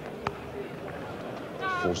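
Cricket bat striking the ball once, a single sharp knock about a quarter of a second in, over steady background noise from the ground.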